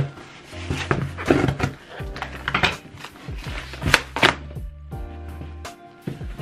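Box cutter slicing packing tape on a cardboard shipping box: a run of irregular sharp cuts and rustles, over background music with a steady bass line.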